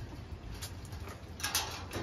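American Pit Bull Terrier puppies' claws faintly ticking and scrabbling on a plastic mesh cage floor as they walk, with a brief louder scuffle about one and a half seconds in.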